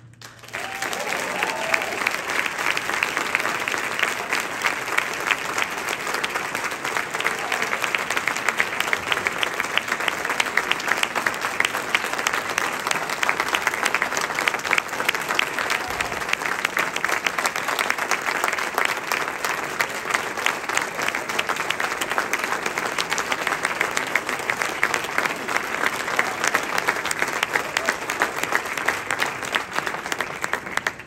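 Audience applauding steadily and at length, with a few voices heard among the clapping.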